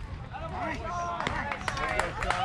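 Several spectators shouting and cheering at once, with voices overlapping as a play unfolds on a baseball field.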